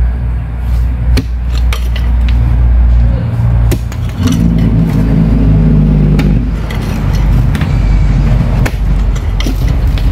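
A pickaxe strikes stony ground several times, each blow a sharp knock a second or more apart. Under it runs a steady low engine-like rumble, with a hum coming up in the middle.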